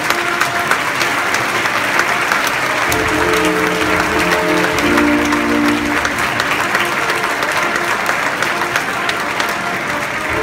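Audience applauding steadily while a concert band plays; the band's held chords come through most clearly from about three to six seconds in.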